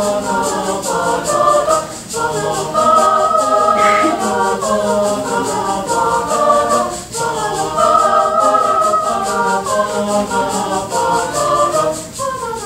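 Mixed choir of young men and women singing in chords, over a steady fast ticking beat. The singing breaks off briefly twice, about two and seven seconds in, between phrases.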